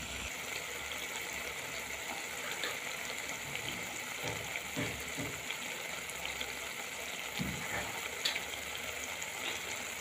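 Brinjal bharta sizzling gently in oil in a pot: a steady faint hiss, with a few soft low knocks in the second half.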